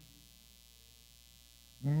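Faint steady electrical mains hum with no other sound, until a man's voice begins near the end.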